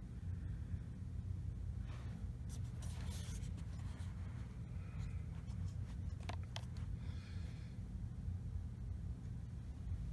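Handling of a bObsweep PetHair Plus plastic remote control: faint rustling and scraping, with a few sharp clicks about six seconds in as its buttons are pressed, over a steady low hum.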